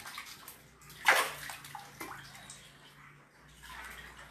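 Shallow floodwater splashing and sloshing on a house floor, with one loud, short splash about a second in and smaller splashes after it.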